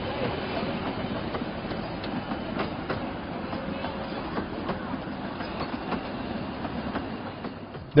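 Miniature passenger train running past on its track: a steady rolling noise of wheels on the rails, with scattered irregular clicks.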